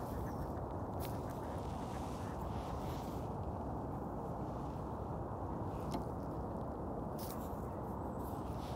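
Quiet outdoor ambience: a steady low rush with a few faint, short clicks.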